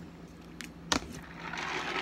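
A metal fork set down on a plate with one sharp clink about a second in, followed by a short, swelling rustle as a plastic pitcher is picked up from the table.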